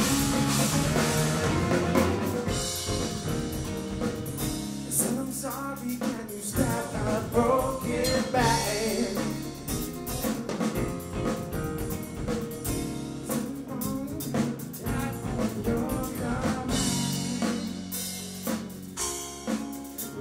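Live rock band playing: electric guitar, six-string electric bass, drum kit and keyboards together, with a lead melody that bends and slides through the middle.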